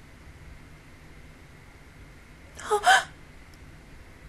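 A woman's short, sharp gasp close to the microphone, two quick breaths in a row about three seconds in, over a faint steady hiss.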